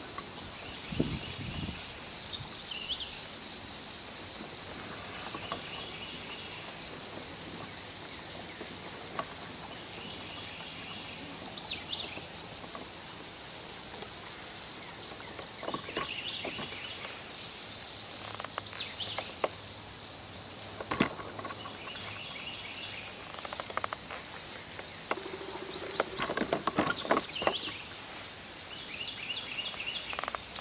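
Insects droning in a steady high buzz, with birds calling in short repeated phrases. A few sharp knocks are scattered through, most of them near the end.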